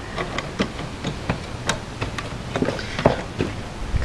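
Irregular clicks and light knocks from a folding solar-panel suitcase's frame as its support arms are unfolded by hand.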